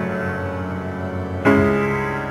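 Piano playing slow, sustained chords: one chord rings and fades, and a new chord is struck about one and a half seconds in.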